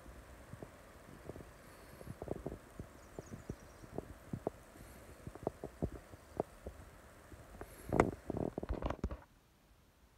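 Irregular soft taps and knocks from a hand-held phone being handled as it films, with a louder cluster of knocks about eight seconds in. The background drops much quieter about nine seconds in.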